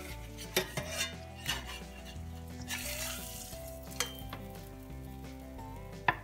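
Butter sizzling in a cast iron skillet as a fried egg is flipped with a slotted spatula: a few clicks and scrapes of the spatula on the pan, and a louder burst of sizzling about three seconds in.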